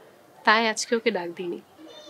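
A woman's voice with a fast, quavering wobble in pitch, followed by a few broken syllables.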